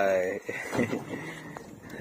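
A man's loud, drawn-out call ends about half a second in, followed by faint background noise on the boat with a thin, steady high tone.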